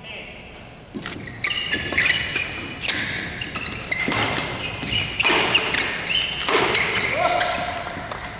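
Badminton doubles rally in a large hall: sharp racket-on-shuttlecock hits at irregular intervals, mixed with high, short squeaks of court shoes.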